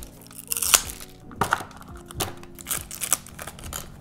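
Plastic blind-box toy capsule being handled and opened: a scatter of short crinkles and sharp clicks over soft background music with held notes.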